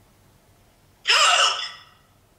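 A person's loud, sharp gasp about a second in, lasting under a second, after near silence.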